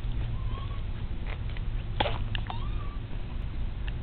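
Two brief animal calls, each a short rise in pitch that levels off, one near the start and one about two and a half seconds in, over a steady low rumble. A few sharp clicks about two seconds in.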